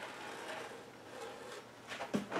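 Rotary cutter blade rolling through two layers of fabric on a cutting mat, a faint, even scratch.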